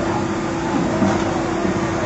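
Steady mechanical drone with a constant low hum at an even, loud level, with faint voices mixed in.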